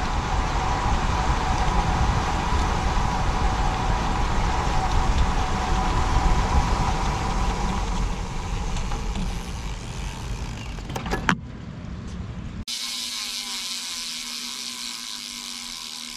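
Wind rushing over the camera microphone and tyre and road noise from a bicycle riding along a paved street, with a faint steady tone in the background. A few sharp clicks come about eleven seconds in, then after a sudden cut the rest is a quieter steady hiss with a low hum.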